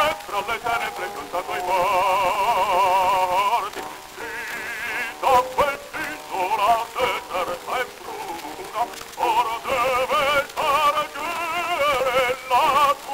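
Baritone voice singing opera with a wide vibrato, on an early acoustic disc recording with crackle and hiss. Long held notes in the first few seconds give way to shorter phrases.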